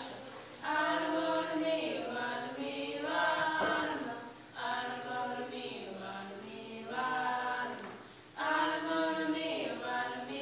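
A group of voices singing a chant-like song together, unaccompanied, in the Sauk language. It goes in short repeated phrases with brief breaths between them.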